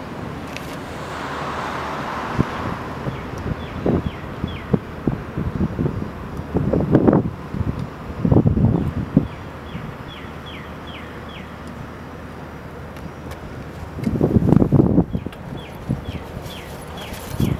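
Wind buffeting the microphone in gusts over a low outdoor rumble, with a small bird giving runs of short, high, falling chirps several times.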